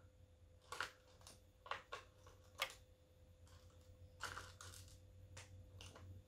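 Faint scattered clicks and rustles of makeup brushes being picked through and handled, with a faint steady hum underneath.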